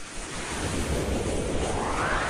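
A whoosh sound effect: a rushing noise that rises steadily in pitch and grows louder, building toward a peak.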